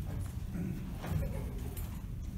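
Bare feet stepping and stamping on a wooden floor during a karate kata: a few short, sharp slaps over a low room rumble.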